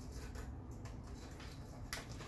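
A few faint clicks from the hollow 3D-printed plastic skull and lamp socket being handled, the sharpest one near the end, over a steady low room rumble.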